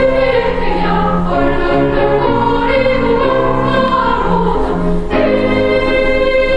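Children's choir singing held notes in several parts at once, moving from chord to chord.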